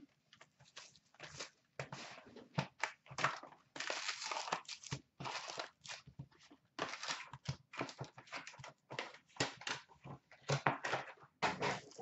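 Hockey card pack wrappers crinkling and tearing as packs are ripped open and handled, an irregular run of rustles with short gaps between them.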